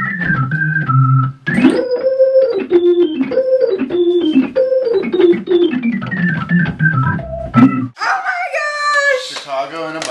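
An organ playing a slow melody of held notes that step downward, stopping abruptly about eight seconds in.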